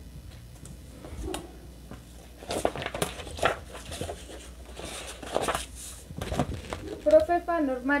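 Sheets of cardstock being handled on a work table: a few short rustles and scrapes of card, starting about two and a half seconds in.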